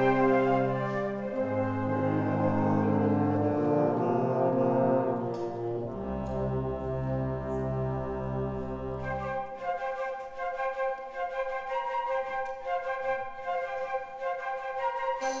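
Youth wind band playing slow held brass chords over sustained low brass notes. About nine seconds in the low brass drops out and the higher woodwinds, flute among them, carry on with shorter, more detached notes.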